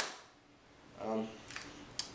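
A sharp click from a KWC Smith & Wesson M&P 40 CO2 non-blowback airsoft pistol being fired right at the start, dying away into near quiet. A short vocal sound follows about a second in, and another click comes near the end.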